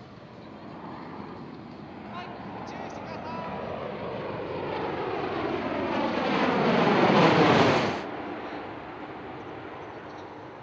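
Bell Boeing MV-22 Osprey tiltrotor flying a low pass, its proprotors and engines growing steadily louder as it comes overhead. The sound peaks about seven seconds in and cuts off abruptly just before eight seconds.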